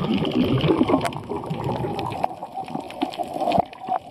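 Muffled rushing and gurgling of water against a camera held underwater, uneven in level and dipping a little past halfway, with scattered sharp clicks.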